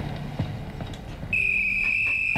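A coach's whistle blown in one long, steady, high-pitched blast. It begins a little over a second in and is still sounding at the end.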